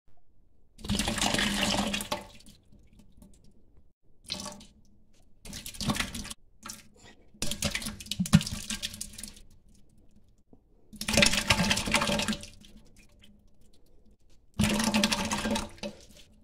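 Salsa sloshing and plopping out of a jar shaken upside down over a stainless steel pot, in about six bursts of shaking with short pauses between.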